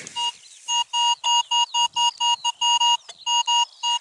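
Metal detector sounding on a buried target: a string of short beeps at one steady pitch, about four a second, with a brief pause about three seconds in. It is a clear, repeatable signal, which reads 46 on the detector.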